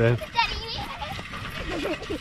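Speech only: a man's voice ending a word, then a brief high-pitched child's voice and fainter children's voices in the background.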